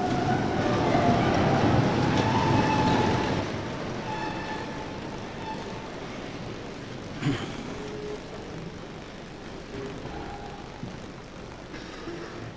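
A large indoor audience sitting down: a dense rustle and shuffle with a low murmur of voices. It is loudest for the first few seconds and then slowly dies away. There is a single sharp knock about seven seconds in.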